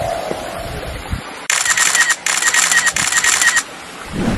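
A rapid, high-pitched clicking rattle that starts suddenly about one and a half seconds in, breaks off briefly, and stops suddenly shortly before the end.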